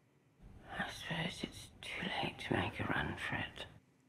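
Whispered, breathy speech lasting about three seconds, a few faint words spoken under the breath.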